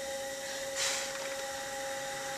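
Electric potter's wheel motor running with a steady whine, while a loop trimming tool shaves clay from the spinning cup; a brief scrape of the tool on the clay about a second in.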